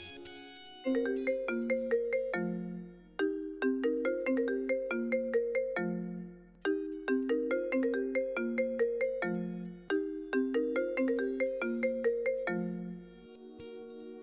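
Mobile phone ringtone: a short tune of struck notes played four times over, starting about a second in and cutting off shortly before the end. Soft background music carries on beneath it and after it.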